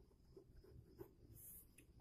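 Near silence with a few faint ticks and a light scrape of writing, a pen on paper or board.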